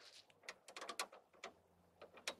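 Latch and handle of a slide-out basement storage tray clicking and rattling as it is tugged: a run of faint clicks over the first second and a half. The latch does not release.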